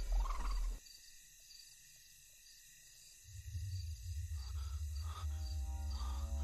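Film score: low music cuts off under a second in, leaving a quiet stretch with faint, evenly repeated high chirping. About three seconds in a deep drone swells up, and held musical tones join it near the end.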